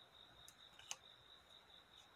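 Near silence: soft clicks of thin paper being creased between the fingers, the clearest about half a second and about a second in, over a faint steady high-pitched tone.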